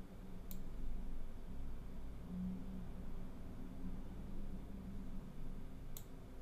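Two computer mouse clicks, one about half a second in and one at the very end, over a low steady room hum.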